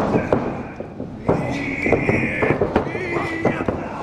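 Pro wrestlers in the ring: a shrill yell begins about a second in and is held for over a second, then a second, wavering yell, amid sharp thuds of bodies on the ring.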